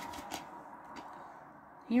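Faint handling noise of a plastic DVD case being swung open, with a couple of small clicks about a third of a second and a second in. A voice starts at the very end.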